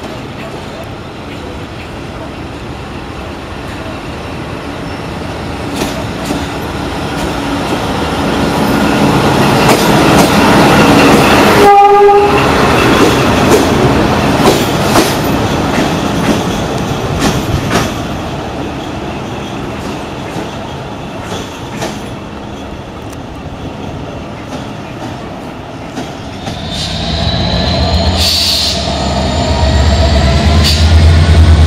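A diesel-hydraulic shunting locomotive running along station track, its engine and wheel clatter growing louder as it approaches. It gives one short horn blast about twelve seconds in, then fades as it moves away. Near the end a lower, heavier engine drone rises.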